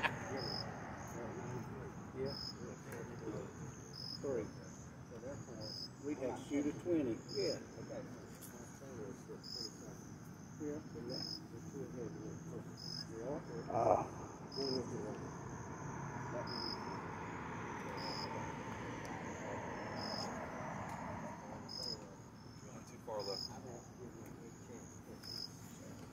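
Crickets chirping in a steady rhythm of short, high-pitched chirps about every second and a half. About 14 seconds in, a single knock of a putter striking a golf ball.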